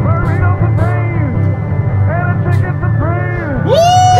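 Two male singers performing a rock song to acoustic guitars, with a steady strummed low end under the sung phrases. Near the end a voice swoops up into a loud, high held note.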